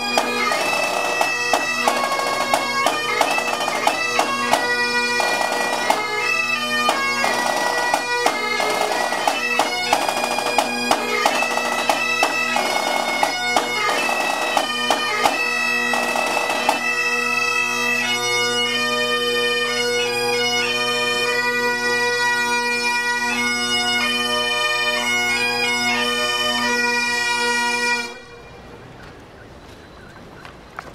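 A pipe band of Great Highland bagpipes plays a tune over their steady drones, with a snare drum beating along for roughly the first half. The pipes carry on alone after that and then stop abruptly about two seconds before the end.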